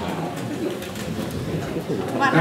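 Indistinct, low voices in a large room, with no clear words.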